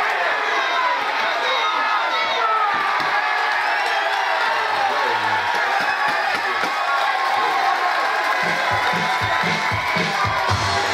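Boxing crowd cheering and shouting loudly, many voices yelling at once, as a boxer is knocked down and the referee steps in. Music with a heavy beat comes in near the end.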